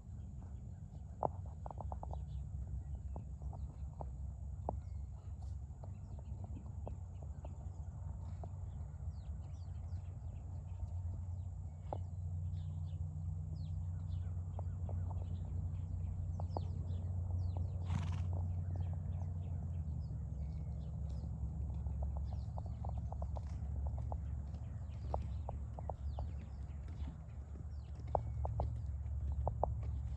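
A saddled horse walking on a dirt track, its hoofbeats coming as scattered light clicks over a steady low rumble, with one sharp sound about eighteen seconds in.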